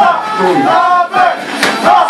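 A man shouting into a microphone over a hall PA, with a crowd yelling around him.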